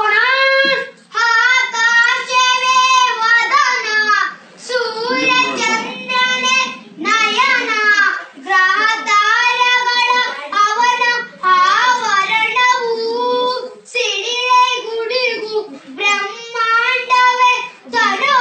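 A child singing unaccompanied, in short phrases with long held notes.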